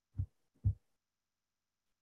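Two short, dull thumps about half a second apart, picked up by the lectern microphone as it is handled.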